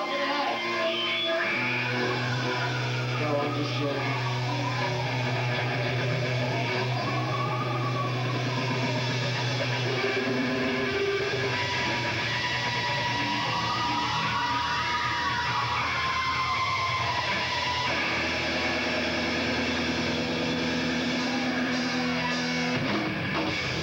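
A live rock band on stage plays a slow, sustained passage. Low electric guitar notes ring and are held, while long tones slide up and back down over them, and voices are mixed in.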